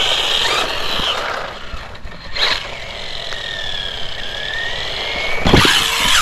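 Brushless electric motor of a 1/16-scale RC car whining as it drives, its pitch gliding up and down with the throttle. A short crack comes about two and a half seconds in, and a loud clatter near the end as the car hits the jump ramp.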